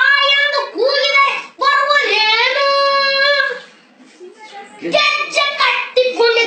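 A child singing, with long held notes that bend in pitch and a short lull a little past the middle.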